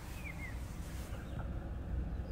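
Small turbocharged petrol car engine idling, heard from inside the cabin as a low steady rumble. A few faint high chirps come in the first half second.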